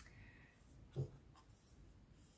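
Faint handling of Osho Zen Tarot cards: a light click at the start and a soft tap about a second in, with quiet in between.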